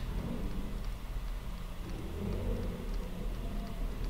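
Steady low electrical hum with a faint hiss and a few faint ticks: the background noise of the recording between spoken phrases.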